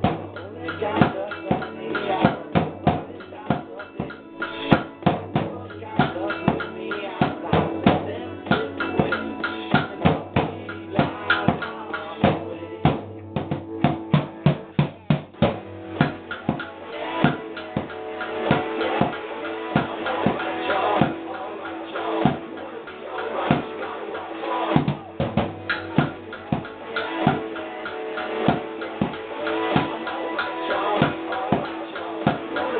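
Drums struck with sticks in a fast, busy pattern, played along to a recorded song with guitar and vocals.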